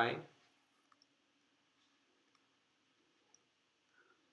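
A few faint clicks from a stylus writing on a digital pen tablet, over a faint steady low hum; a spoken word ends just at the start.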